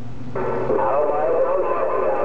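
A received station coming in over the HR2510 radio's speaker, cutting in about a third of a second in. It is a thin, narrow-band, hard-to-make-out voice over static, with a steady tone running under it: the distant station's reply to the operator's question.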